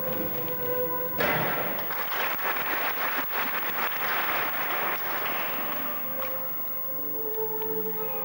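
Audience applause breaks out suddenly with a thud about a second in, as a gymnast lands an airborne skill on the balance beam, and dies away around six seconds in. Background music plays throughout.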